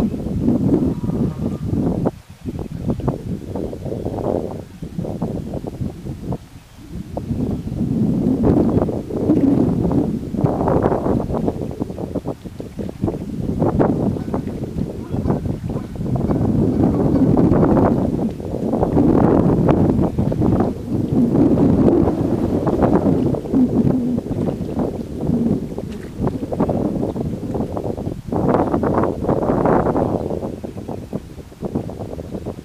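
Wind buffeting the microphone: a loud, low, gusty noise that surges and fades, dropping away briefly twice in the first seven seconds.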